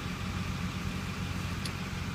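Duramax V8 diesel idling steadily, heard from inside the cab.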